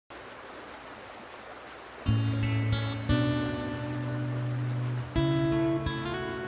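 Acoustic guitar music: a chord rings out about two seconds in, another a second later and another near the end, each left to sustain. Before the first chord only a steady rush of river water is heard.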